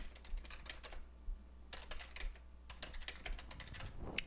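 Typing on a computer keyboard: an irregular run of quick key clicks with a brief lull partway through.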